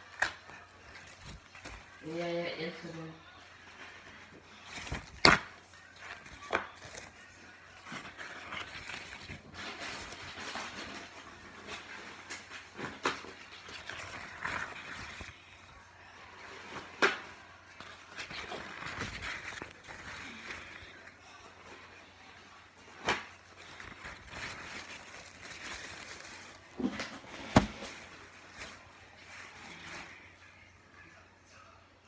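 Household handling noise: scattered knocks and clacks of objects being picked up and set down on a hard surface, between stretches of rustling, with five or so sharper knocks spread through.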